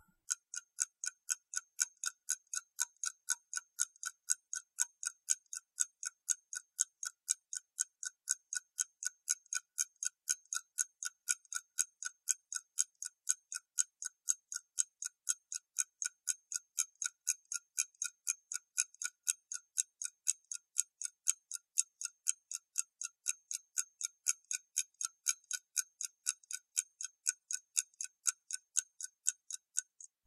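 Ticking clock sound effect, even ticks a little over two a second, marking the time given for a reading task.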